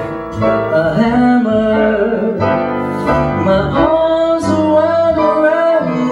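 Live slow jazz ballad: grand piano and double bass playing, with a male voice singing wordless held notes over them.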